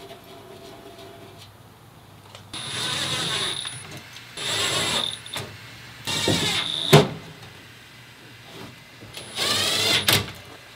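Cordless power drill run in four short bursts of about a second each, with a whining motor, and a sharp click as the third burst stops.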